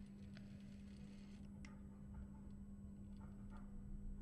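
Faint, scattered light clicks from handling fabric and parts at a sewing machine, over a steady low hum.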